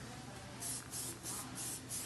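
Fatboy Moldable Lacquer aerosol hairspray giving five short hissing bursts in quick succession, about three a second, starting about half a second in. It is being sprayed onto a styled updo to set it.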